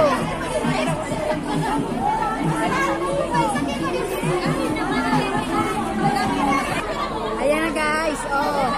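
Chatter from a crowd of women talking at once, many overlapping voices at a steady level with no single voice standing out.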